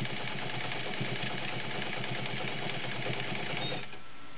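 Vintage Fleetwood 690 all-metal zigzag sewing machine with a one-amp motor running and stitching through folded fabric, a quiet, fast, even mechanical clatter of the needle and feed; it stops just before the end.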